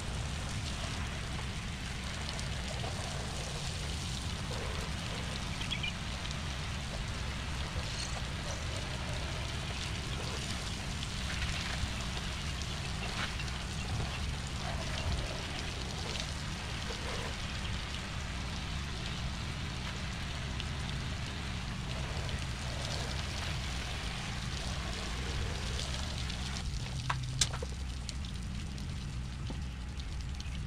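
Steady hiss of water spraying, over a low steady machine hum, typical of a house-washing rig running. A couple of sharp clicks come near the end.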